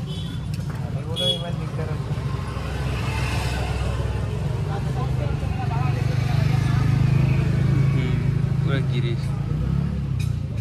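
A motor vehicle engine running steadily, swelling louder for a few seconds in the middle, under background chatter.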